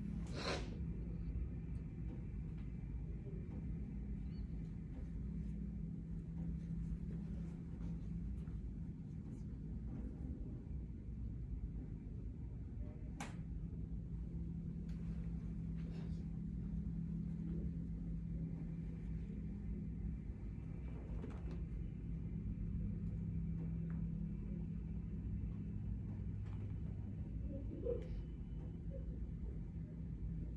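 Steady low hum of room tone, with a single faint click about 13 seconds in.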